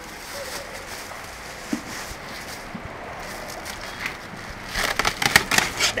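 Plastic wrapping and cardboard being handled as a wheel is unwrapped from its box: rustling and crinkling, with a burst of sharp crinkles near the end.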